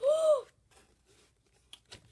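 A child's short 'ooh' of wonder, the pitch rising and then falling, lasting about half a second at the start; then quiet apart from a couple of faint clicks near the end.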